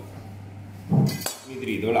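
A short knock and clink of a kitchen knife against a cutting board about a second in, over a steady low hum.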